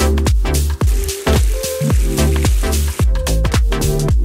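Background electronic dance music with a steady kick-drum beat, about two beats a second.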